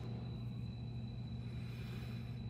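Steady low hum with a faint even hiss and a thin high whine underneath: the room's background tone, with no distinct sound events.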